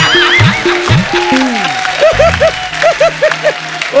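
People laughing heartily over a short comic music cue. From about halfway through, the laughter turns into a quick run of 'ha-ha-ha' bursts.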